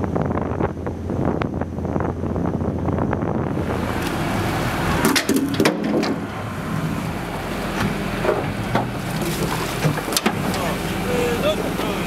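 A fishing boat's engine running with a steady low drone. A few seconds in the sound changes to work on deck as the crew hauls a set net: several knocks and clatter over the engine, with crew voices.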